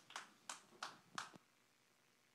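A few faint, scattered hand claps, about three a second, stopping about one and a half seconds in.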